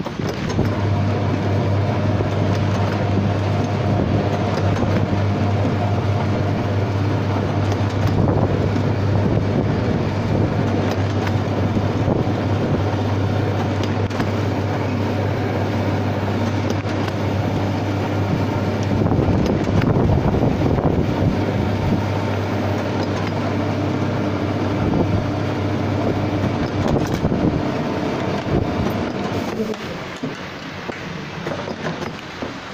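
Automatic soap packing machine running: continuous mechanical clatter over a steady low hum, and the hum drops away a few seconds before the end.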